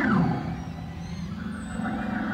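Live rock band with a Hammond organ: a held organ chord breaks off at once into a steep downward pitch swoop. The band then plays on more softly.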